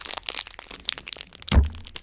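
Foil booster-pack wrapper crinkling and crackling in the hands as it is twisted and pulled in an attempt to tear it open, with one loud thump about one and a half seconds in.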